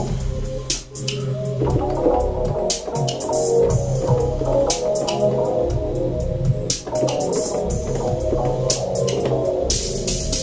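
An electronic beat playing: drum hits in a steady rhythm over a bass line. Synthesizer keyboard notes are played over it from about a second and a half in.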